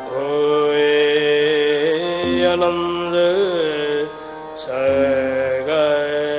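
Sikh kirtan: ragis singing a drawn-out devotional line over sustained harmonium chords with tabla. The held notes bend in pitch around the middle, the music dips briefly about four seconds in, then resumes.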